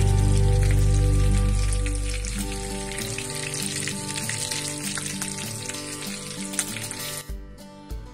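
Folded potato tacos frying in shallow oil in a pan: a steady sizzle with dense crackling, fading out near the end. Background music plays throughout.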